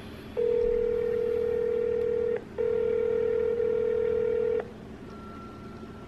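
Telephone ringing tone through a smartphone's speaker as an outgoing call rings: two long steady tones of about two seconds each, separated by a brief gap.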